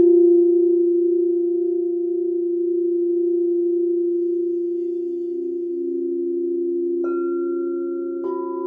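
Crystal singing bowls ringing together in steady, held tones as they are rubbed with a mallet. A lower tone pulses briefly in the middle, and about seven seconds in another bowl is struck, adding a higher ring on top.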